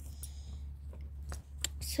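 A few short clicks and light rattles of a metal buckle on a leather strap as the saddle's girth is handled and fastened, over a steady low rumble.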